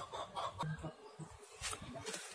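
Faint, quick run of short clucking calls in the background, about five a second, stopping about half a second in; one or two faint calls follow.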